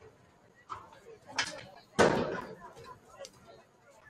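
Scattered faint voices with a sudden loud bang about two seconds in that dies away within half a second.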